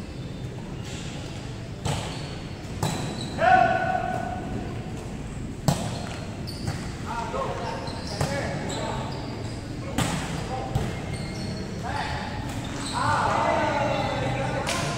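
Volleyball rally in a gym: several sharp slaps of hands and forearms on the ball, a second or two apart, echoing in the large hall. Players' shouts and calls come in between, the loudest about three and a half seconds in and again near the end.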